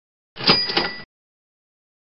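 Short editing sound effect marking the change to the next question: two quick metallic strikes with a bright, bell-like ring, lasting under a second, a third of a second in.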